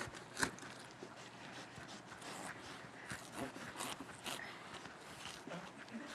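A knife cutting into the rind of a whole watermelon: faint crisp crackles and scrapes, with one sharper snap about half a second in.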